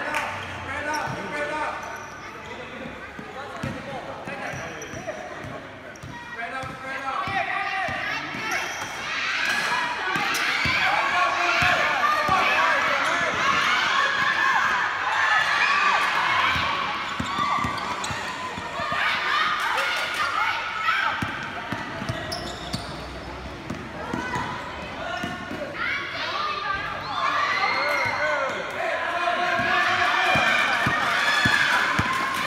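Basketball bouncing on a hard court during a children's game, with many overlapping voices of players and spectators shouting and calling out over it, loudest through the middle.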